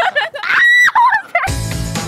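A woman squealing and laughing in short high-pitched shrieks, one held briefly. About one and a half seconds in, it cuts off and background music with a steady beat begins.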